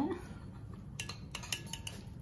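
A few light clicks and clinks of metal fondue forks and cutlery against the enamelled pot and plates, starting about a second in, over quiet table noise.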